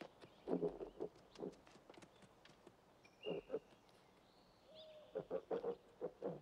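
Film soundtrack of a forest hunting scene: short low grunts in several clusters, with sharp snaps and a couple of thin bird-like whistles.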